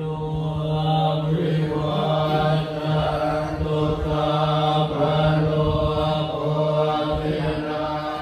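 Group of Thai Buddhist monks chanting in unison, holding one low, steady reciting pitch as the syllables move on over it.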